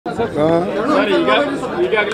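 Speech: several voices talking at once.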